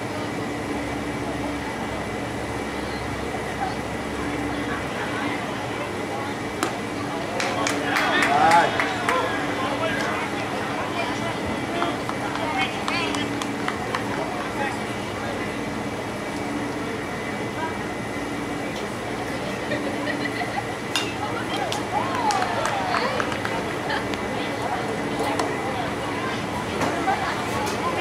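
Ballpark background of indistinct voices from spectators and players, with louder calls about eight seconds in and again near twenty-two seconds, over a steady background hum.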